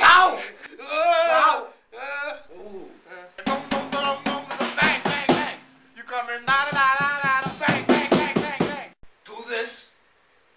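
Men's voices singing and wailing in short phrases, the pitch wavering up and down, broken by brief silences.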